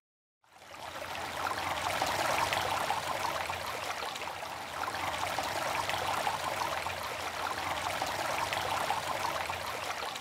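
Steady rushing sound of flowing water, like a stream, fading in over the first couple of seconds after a brief silence.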